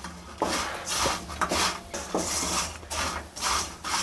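Flat spatula scraping the sides of an aluminium kadai as it tosses frying raw banana slices, in repeated scraping strokes about two a second.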